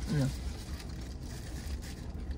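A steady low rumble inside a parked vehicle's cabin, with faint rustling and handling of paper food wrappers.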